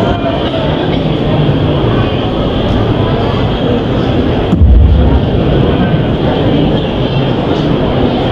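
A man's voice over a public-address system, half buried in a loud, steady rumbling noise, with a heavy low thump about halfway through.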